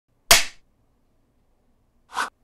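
A single sharp smack, like a slap or hand clap, about a third of a second in, dying away within a fraction of a second, then silence.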